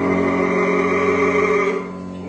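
Operatic bass voice holding one long sustained note with piano accompaniment; the note ends near the end.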